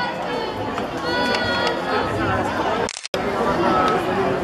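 Crowd of spectators chattering, many voices overlapping, children among them. The sound cuts out completely for a moment about three seconds in.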